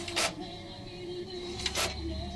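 HP DesignJet T120 plotter printing a page: two short noisy print-carriage passes about a second and a half apart, over a steady hum.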